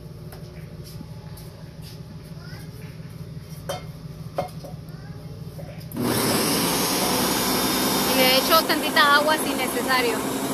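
A few clicks as the jar is seated and the controls pressed, then a Ninja countertop blender switches on suddenly about six seconds in and runs loud and steady, puréeing the soaked chiles into a sauce.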